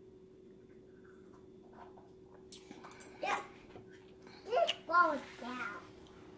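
A woman's wordless voice sounds after drinking: one short sound about three seconds in, then a few more near five seconds, over a steady low hum.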